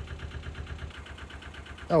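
Narrowboat's diesel engine running steadily with a quick, even chugging beat.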